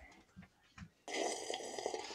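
A raspy slurp as a person sips milk from a mug, starting about a second in after a near-silent pause.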